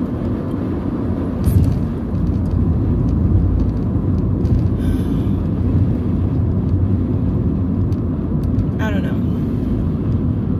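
Road and engine noise inside a moving car's cabin: a steady low rumble, with a brief thump about one and a half seconds in.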